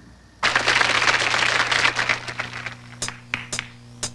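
Studio audience applauding, starting suddenly about half a second in and dying away over the next two seconds, followed by three sharp taps near the end.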